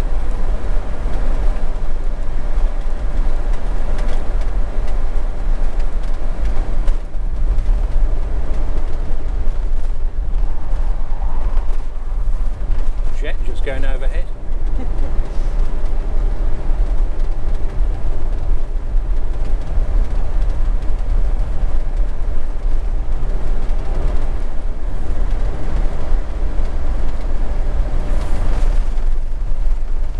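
Steady low rumble of a motorhome's engine and tyres on the road, heard from inside the cab while driving.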